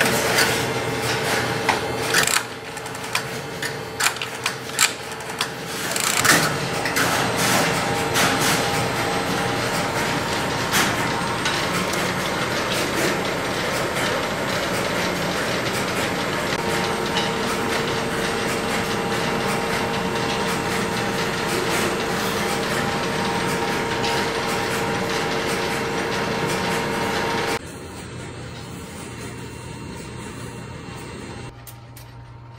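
Relays and crossbar switches of a No. 1 Crossbar marker clicking and clattering as it works through a test call: scattered sharp clicks at first, then a dense continuous clatter with a faint steady tone beneath. It breaks off sharply near the end, leaving quieter room sound.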